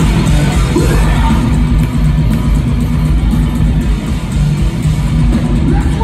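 Hardcore punk band playing live at full volume: distorted electric guitar, bass and drums through the venue PA, heard from within the crowd.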